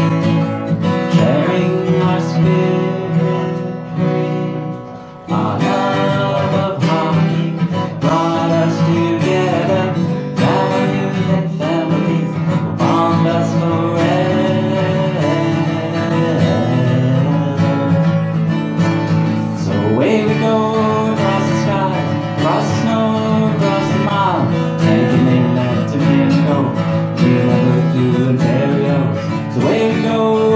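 Acoustic guitar strummed live with a man singing over it. The sound dips briefly about five seconds in, then the strumming and singing come back in together.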